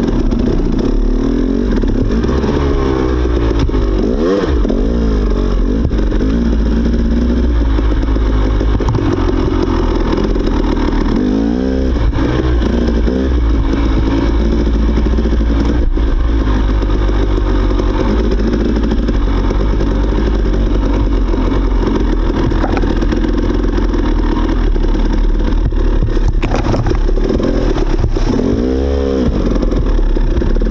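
Dirt bike engine running while riding a muddy trail, heard from on the bike, steady with the revs rising and falling several times: about three to five seconds in, around twelve seconds, and again near the end.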